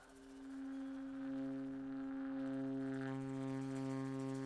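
Long held notes from tenor saxophone, tuba and bowed cello playing free jazz together. One note enters at the start and swells, a lower note joins about a second in, and the chord grows fuller near the end.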